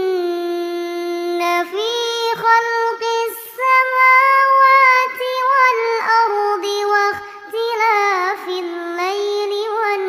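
A child's voice recites the Quran in the melodic tilawat style. A single high voice holds long drawn-out notes with ornamented glides, with short pauses for breath between phrases.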